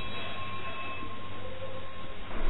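Background noise of a narrow-band lecture recording in a pause between sentences: a steady hiss with a low hum and a faint, thin, steady high tone, joined by a second lower tone about one and a half seconds in.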